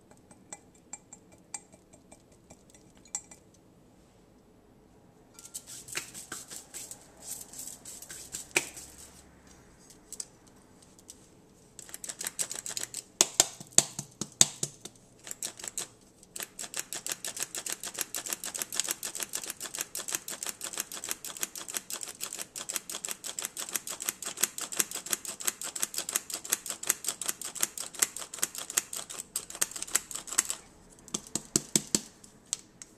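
Hand-operated metal flour sifter being worked, making a fast, steady run of clicks as flour is sifted through its mesh. A short burst of clicking comes about twelve seconds in, and the continuous clicking starts about four seconds later; softer rustling and a few taps come before.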